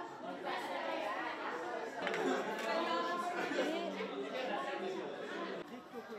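Several people chattering at once, with no single voice standing out.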